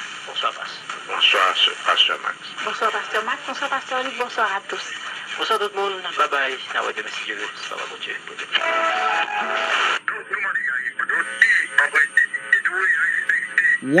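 A small portable FM/SCA receiver's speaker plays a Haitian-language broadcast from a 67 kHz subcarrier: talk with a stretch of music, thin and lacking bass. About ten seconds in the sound changes abruptly as the radio is retuned to another subcarrier station.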